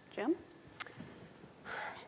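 A single spoken word, then quiet room tone with one short click a little under a second in and a soft breath just before a man starts talking.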